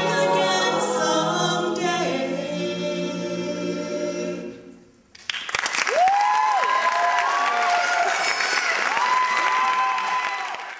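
A cappella group of mixed voices holding a final sung chord that fades out about four and a half seconds in. After a moment of silence the audience applauds, with high drawn-out cheers over the clapping.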